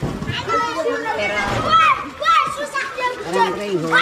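A group of children shouting and squealing at play, several high voices overlapping.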